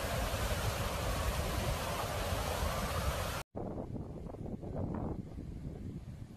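Fast-moving floodwater rushing in a steady noisy wash, with wind buffeting the microphone. It cuts off abruptly about three and a half seconds in, giving way to quieter, duller outdoor noise.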